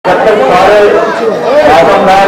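Crowd chatter: several people talking at once close by.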